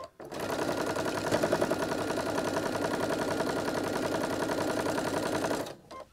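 Janome computerized sewing machine stitching a seam through pieced cotton quilt fabric. It runs at a steady fast speed for about five seconds, then stops abruptly near the end.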